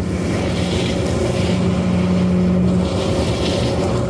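Trailer-mounted leaf vacuum running at a steady drone, with a constant low hum, while its wide suction hose draws up leaves from a lawn.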